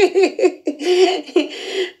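A woman laughing: a run of quick pitched 'ha' pulses in the first second, then a longer, breathier laugh.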